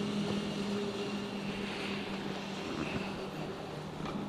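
A steady low motor hum, even in level, with a light haze of outdoor noise.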